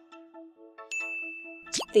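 Quiz game-show chime: a single high bell-like ding about a second in, held briefly over a quiet steady music bed, marking the countdown timer running out. A quick rising swoosh follows near the end as the answer is revealed.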